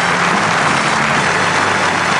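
Studio audience applauding steadily as a surprise guest comes on.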